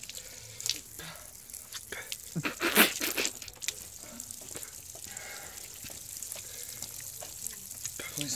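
Water splashing and dripping in short, irregular bursts, with one louder splash about three seconds in, as a face and hands are rinsed.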